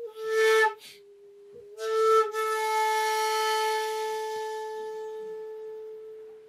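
Solo shakuhachi playing a slow honkyoku: a strong, breathy note at the start, a softer lower note, then a second forceful breathy attack about two seconds in that settles into one long held note, slowly fading near the end.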